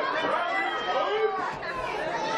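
Several overlapping voices of the wrestling audience chattering, with no single voice standing out.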